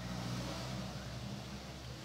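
A steady low hum under a faint even hiss, with no distinct knocks or clicks.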